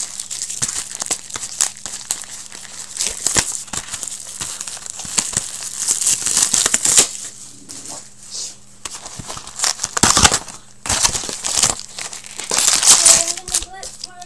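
Foil trading-card pack wrappers crinkling and crumpling in several loud bursts, mixed with short clicks of packs and cards being set down on a table.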